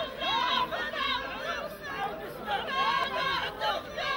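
Several voices overlapping at once in chatter and short calls.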